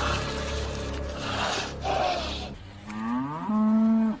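A cow moos once near the end, its pitch rising and then holding steady before it stops abruptly. It comes after a stretch of low rumbling and rushing film sound effects.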